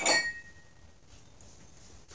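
One short clink of a glazed ceramic cup knocking against other pottery as it is picked up, with a brief high ring that dies away within about half a second.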